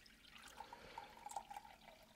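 Bleach pouring in a thin stream from a plastic gallon jug into a glass measuring cup: a faint trickle of liquid.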